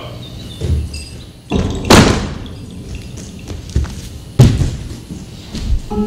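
Heavy thumps and knocks of performers moving on a theatre stage, with the loudest about two seconds and four and a half seconds in.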